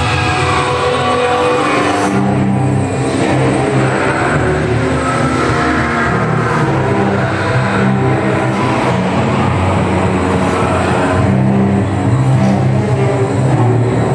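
Haunted-house attraction soundtrack: a loud, steady low rumbling drone with shifting deep tones under eerie music.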